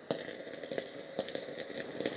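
Black & Decker Stowaway SW101 travel steam iron making steam, with an irregular crackle and scattered small clicks.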